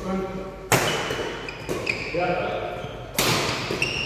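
Badminton rackets striking a shuttlecock in a rally, two sharp hits about two and a half seconds apart, ringing slightly in the hall.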